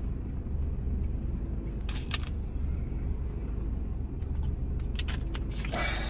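Steady low rumble of a Mitsubishi Fuso heavy truck's diesel engine idling, heard from inside the cab. A few faint clicks come about two seconds in, and a plastic crackle from a water bottle being handled comes near the end.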